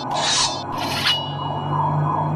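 A file rasping over the steel point of a dart in two short strokes, sharpening its tip.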